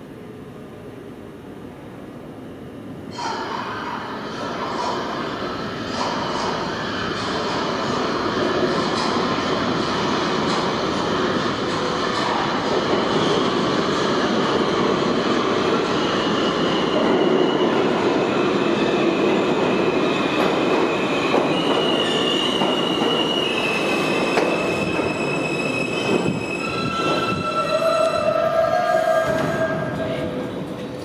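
R160A-2/R160B subway train pulling into an underground station: a rumble of wheels on rail that jumps up about three seconds in and grows louder as the train comes in. In the second half, high squeals and whining tones from the wheels and brakes step down in pitch as it brakes to a stop.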